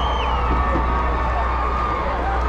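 Large stadium crowd cheering and calling out, a steady din of many voices with a few long held high tones in it.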